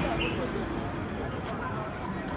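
Street ambience: voices of people talking close by over a steady hum of road traffic.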